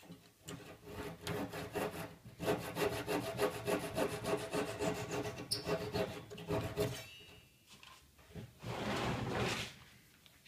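Flush cut hand saw cutting off an alignment peg flush with the table edge, in a long run of rapid, even back-and-forth strokes. After a short pause a second, briefer run of strokes follows near the end.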